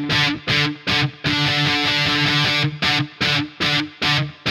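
Distorted electric guitar strumming chords slowly in a choppy pattern, the chords stopped dead into brief silences about seven times.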